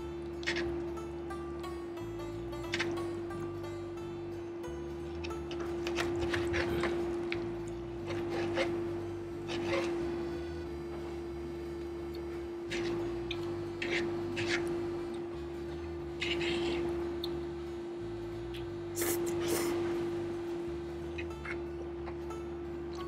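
Background music with a steady bass line, over a dozen or so short clinks and scrapes of a knife and fork on a plate as slices are cut from a roast.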